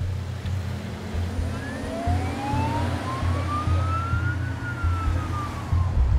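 Ambulance siren wailing: one slow rise in pitch over about three seconds, then a slower fall, over a steady low rumble.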